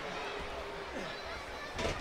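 Arena crowd murmuring at a low level between moves, with scattered faint voices calling out.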